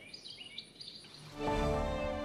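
A small songbird calling in a series of short, high, falling chirps over outdoor ambience. About 1.3 s in, louder music with sustained notes and a low bass comes in and takes over.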